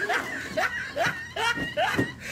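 A person laughing in short snickering bursts, about three a second, each rising in pitch.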